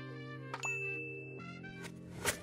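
A mouse click followed by a single high bell ding that rings for about a second: the sound effect of an animated subscribe button being clicked. It plays over background music with held notes.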